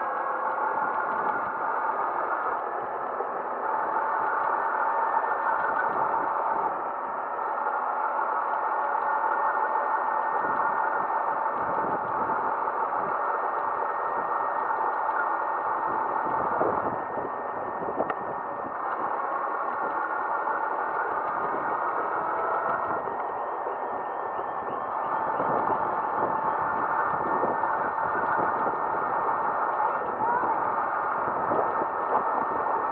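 Motor scooter riding along a street: a steady motor drone whose pitch and loudness shift several times with speed, over road and wind noise.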